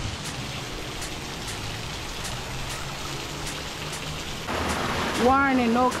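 Steady splashing hiss of water falling onto rocks at a waterfall, growing louder about four and a half seconds in. A voice comes in near the end.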